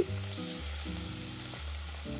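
Diced chicken breast, coated in oil and chili flakes, sizzling as pieces are dropped into a hot non-stick pan to sear: a steady hiss of frying.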